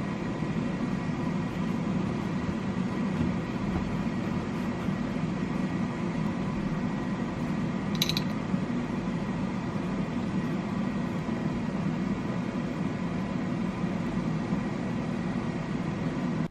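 A steady mechanical hum of a running motor or fan, with one brief high-pitched click about halfway through.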